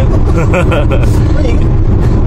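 Steady low engine and road rumble inside the cabin of a moving LPG-fuelled Daewoo Rezzo, with a few words of speech over it about a third of a second in.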